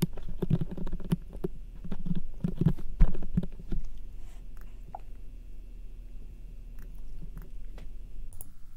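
Computer keyboard typing and mouse clicks: irregular clicks and soft thuds, dense for the first few seconds and then sparse, over a steady low hum.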